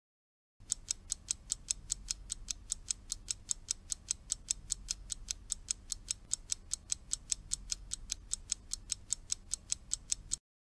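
Clock-style ticking timer sound effect, an even tick-tock at a few ticks a second, marking the pause for the learner to repeat the line aloud.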